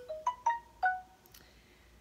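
Phone alert tone: a short melody of about five quick chiming notes in the first second, then a faint higher ping just after.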